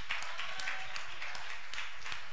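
Church congregation applauding, many hands clapping irregularly and steadily.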